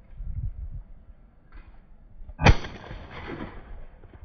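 A single shotgun shot about two and a half seconds in, sharp and loud, with an echo dying away over the next second.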